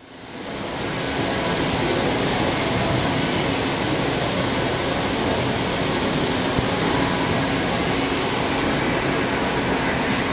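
Steady rushing room noise of a gym, like air-conditioning or ventilation, with a faint low hum; it fades in over the first second and then holds even.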